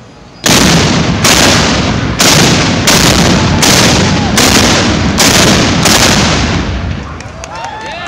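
A row of small black-powder cannons firing in quick succession: eight booms about three-quarters of a second apart, starting half a second in, with a rumbling echo carrying between them that dies away near the end.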